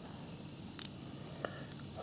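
Quiet outdoor background with a few faint clicks, about a second in and again near the end.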